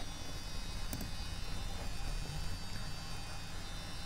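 Steady low electrical mains hum with a faint hiss, picked up on the microphone line during a pause in speech; one faint click about a second in.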